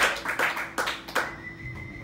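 Audience clapping at the end of a live set, a handful of scattered claps that thin out after about a second. A faint steady high tone lingers after the claps stop.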